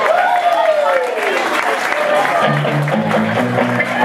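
Live rock band playing through a PA, with crowd noise and clapping. A long falling tone sweeps down over the first second and a half, then a stepping bass line starts about two and a half seconds in.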